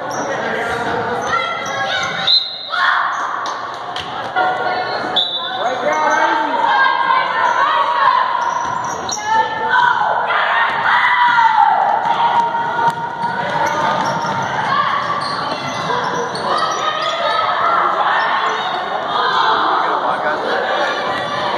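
A basketball dribbling and bouncing on a hardwood gym floor, with players and spectators calling out over it. The sound is echoing in a large gymnasium.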